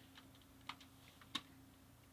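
Near silence with a faint steady hum, broken by two faint short clicks a little over half a second apart near the middle.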